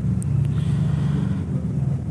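A steady low hum with no speech over it.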